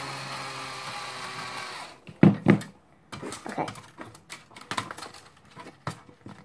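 Cordless power drill driving a screw out of a DVD player's casing, a steady whirr for about two seconds whose pitch sags slightly. Two knocks follow, then light clicks and rattles of the metal and plastic parts being handled.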